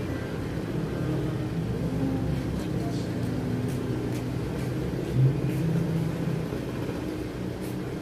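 Indistinct, unintelligible voices in the background over a steady low rumble, with one brief louder low sound about five seconds in.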